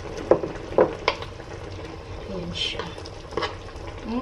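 A few sharp clinks of a metal utensil against a frying pan as a simmering bottle gourd (upo) and sardine stew is seasoned and stirred, over a steady bubbling hiss from the pan.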